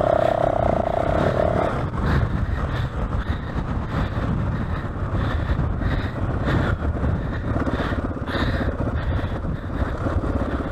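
Yamaha WR450F dirt bike's single-cylinder four-stroke engine running at low speed on rough, rocky ground, with a steady higher hum in the first second and a half.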